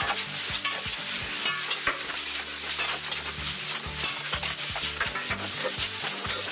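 Compressed air blasting from the free end of a loose pneumatic air hose as it whips about, a steady loud hiss with a rapid irregular crackle of the hose slapping the floor. This is hose whiplash: an unclamped hose after a failure in the air line, with nothing to shut off the airflow.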